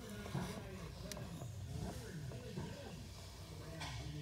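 Faint, indistinct voices, with a sharp click about a second in and another near the end.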